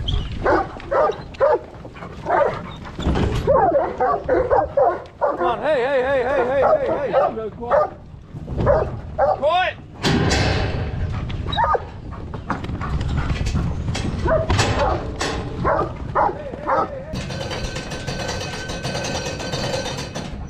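A mob of hoggets (young sheep) bleating with wavering, quavering calls, with dogs barking among them. A steady hum comes in near the end.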